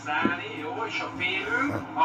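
Speech from a video playing back on a television or monitor, picked up off the screen's speaker in the room.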